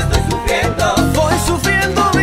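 Salsa music: a full-band salsa romántica recording playing steadily at full level.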